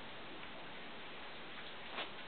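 Faint steady hiss with a few small ticks and a click near the end, from puppies mouthing and tugging a rope leash and a stuffed toy on a quilt.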